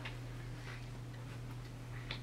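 A steady low hum with a few faint soft clicks and rustles as a picture book's page is turned.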